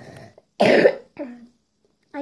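A person coughing: one hard cough a little over half a second in, followed by a shorter, weaker one.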